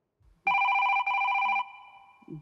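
Telephone ringing: two electronic rings back to back, starting about half a second in, then fading away after they stop.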